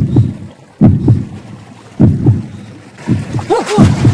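Horror-film heartbeat sound effect: deep double thumps about once a second. Wavering, sliding tones join the last beats near the end.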